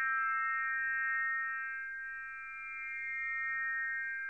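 A cluster of high, pure electronic tones from the magnetic tape part of a piece for flute and tape, held together as one sustained chord. It swells, dips a little past the middle and swells again.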